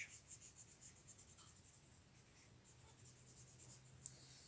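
Faint strokes of a Crayola felt-tip marker colouring on paper, a quick scratchy rhythm that thins out about halfway through.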